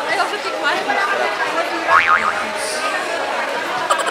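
Crowd chatter: many voices talking at once, none clear, in a busy hall, with one voice rising and falling sharply about halfway through.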